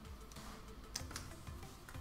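Light clicks and taps of pastel pencils being handled and swapped, with two sharper clicks about a second in, over faint background music.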